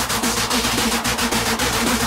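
Electronic hardcore (gabber) music: a sustained synth line over quick ticking percussion, without a heavy kick drum.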